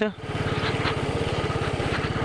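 Royal Enfield Bullet's single-cylinder four-stroke engine running under way, its exhaust giving a rapid, even beat as the motorcycle is ridden over a rough dirt road.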